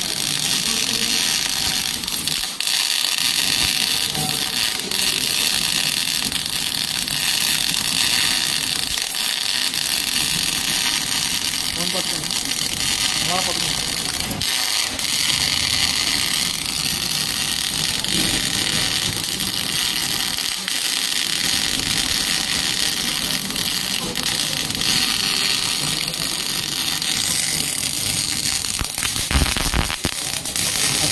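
MIG welding arc burning steadily as wire feeds into the weld, a continuous crackling hiss with no breaks.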